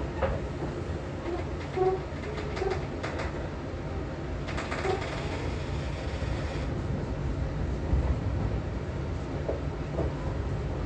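JR 415 series electric multiple unit heard from inside the carriage as it pulls away from a station: a steady low rumble of traction motors and wheels on the rails. A knock comes right at the start, a few short low tones follow in the first seconds, and a hiss lasts about two seconds midway.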